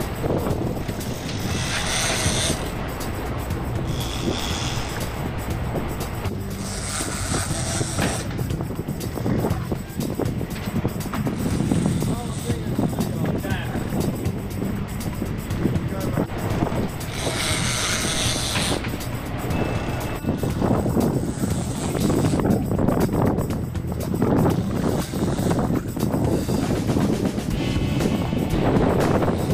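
Sportfishing boat's engine running underway with wind and water noise, while an angler fights a fish on a bent trolling rod; brief hissing surges come about two, eight and eighteen seconds in.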